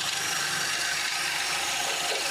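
Cordless drill running steadily, spinning a wooden blank through a dowel-making jig, the jig's carbide blade shaving it down into a round 15 mm dowel.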